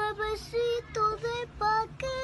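A high-pitched singing voice in a run of about six short, clipped notes at much the same pitch.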